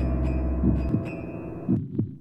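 Low, soft thumps about once a second over background music. The music's bass drops out about a second in, and the sound falls away near the end.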